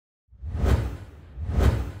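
Two whoosh sound effects for a logo animation, about a second apart, each swelling quickly and falling away, over a deep rumble that fades out afterwards.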